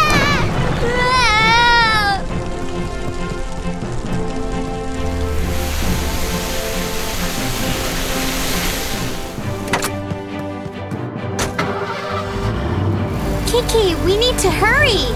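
Cartoon soundtrack of sustained background music, opening with high wavering cries of alarm. Midway, a hiss of spraying water rises over the music, and a few sharp clicks follow later.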